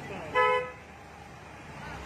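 A vehicle horn gives one short honk about half a second in, over a low steady background hum.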